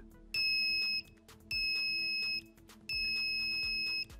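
Active piezo buzzer in an Arduino push-button circuit sounding three times, one steady high-pitched beep of about a second for each press of the button. Faint background music runs underneath.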